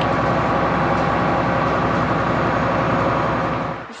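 Steady drone of a moving city bus heard from inside: engine hum and road noise, cutting off suddenly just before the end.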